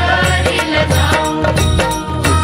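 Marathi devotional song (Vitthal bhaktigeet) music with a steady percussive beat over deep bass notes and a melodic line.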